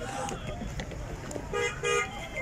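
A vehicle horn honking twice in two short blasts near the end, over background voices.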